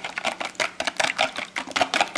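Wire balloon whisk beating raw eggs in a plastic bowl: quick, even clicking strokes of the wires against the bowl, several a second.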